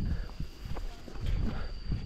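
Low, uneven rumbling on the microphone of a handheld camera held outdoors, with a few faint clicks and a thin, steady high-pitched tone underneath.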